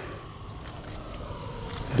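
E-flite F-16 Falcon 80mm electric ducted-fan RC jet diving with the throttle closed: a faint whoosh of air over the airframe and windmilling fan, slowly getting louder as it comes down, over a low rumble of wind on the microphone.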